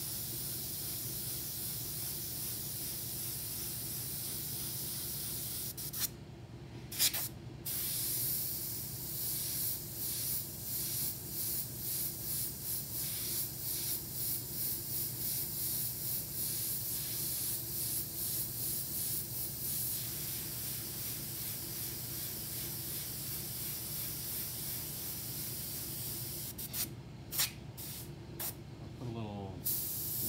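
Airbrush spraying paint onto a T-shirt: a steady high hiss of air, cut off briefly a few times about six seconds in, then a long run of short, quick bursts as the trigger is worked in rapid strokes, and a few more breaks near the end.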